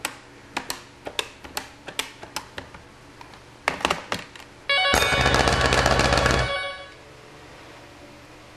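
About a dozen quick plastic clicks of telephone keypad buttons being pressed, then a loud burst of rapid electric bell ringing with a low hum under it, lasting about two seconds and then cutting off. The bells are driven by a Wheelock KS-16301 phone ringer relay, which turns the phone's ring signal into 120 V AC.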